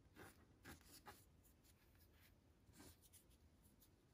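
Faint rustling and brushing of hands sliding crocheted yarn pieces and felt cutouts over a tabletop: a few soft scuffs, the clearest four within the first three seconds.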